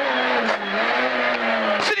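Peugeot 106 A5 rally car's engine heard from inside the cabin, running hard at speed; its note dips slightly about half a second in, then holds steady. The co-driver's voice comes in right at the end.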